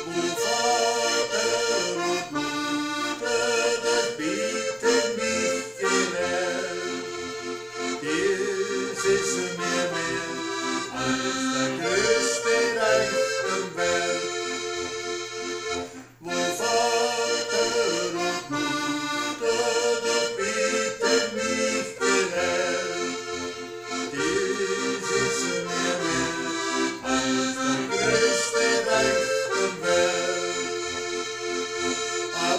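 Button accordion playing a folk tune, with melody and chords, in one continuous piece that breaks off briefly about halfway through.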